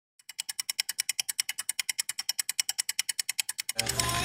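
A rapid, perfectly even run of sharp mechanical-sounding clicks, about ten a second, starting suddenly and stopping shortly before the end.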